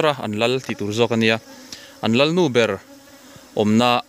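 Honey bees buzzing close by, loud in three passes whose pitch swoops up and down as the bees fly past: one through the first second or so, one in the middle, and one at the end. A quieter hum of the swarm lies between.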